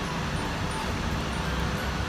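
Steady low background rumble with an even hiss above it.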